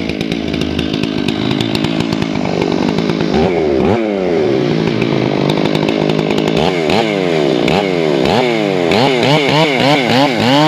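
Ported Stihl 461 chainsaw running loud, first near idle, then revved up and down, with quick repeated throttle blips, about two or three a second, in the last few seconds as the bar goes to the tamarack log.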